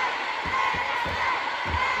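Live pop band playing in an arena, heard through a phone's microphone in the crowd: a steady drum beat under wavering voices, with crowd noise mixed in.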